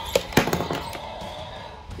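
Two sharp plastic clacks about a quarter second apart from a large Mattel Destroy 'N Devour Indominus Rex toy being handled on a wooden table, the second followed by a brief rattle.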